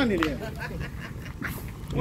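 A person's voice briefly at the start, then low background chatter with a few short, sharp clicks.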